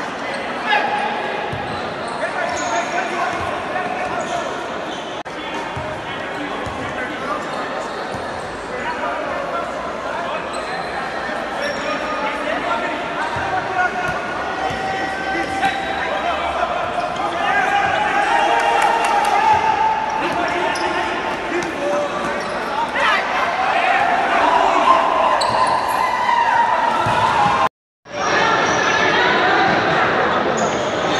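Futsal game in an indoor sports hall: the ball being kicked and bouncing on the court, with echo, under players' and spectators' shouting voices. The sound cuts out for a moment near the end.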